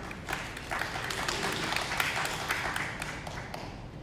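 Audience applauding, scattered hand claps that fill in after about a second and thin out near the end.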